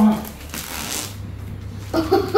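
Crinkling rustle of a small printed packet being handled, starting about half a second in and lasting under a second, over a steady low hum.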